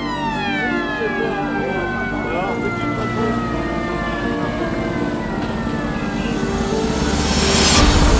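A motor-driven siren winding down, several tones falling steadily in pitch together over about six seconds. Street-parade sound runs under it, and a loud burst of noise comes near the end.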